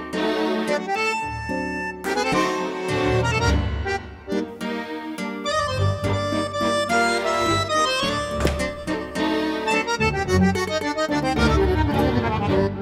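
Two accordions playing a tango duet: a red Roland digital accordion and a small black accordion, a quick melody over rhythmic low bass notes.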